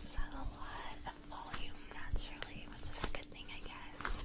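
Soft whispering over the rustle of long hair handled by fingers, with a few sharp little clicks and a faint steady hum underneath.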